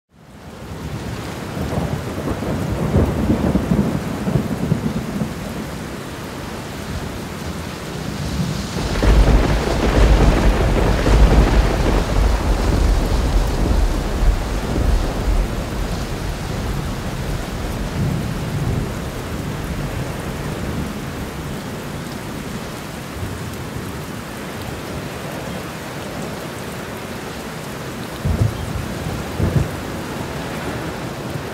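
Thunderstorm: steady rain with rolling thunder. The sound fades in at the start, and the biggest roll of thunder builds about nine seconds in, rumbling for several seconds before easing back under the rain.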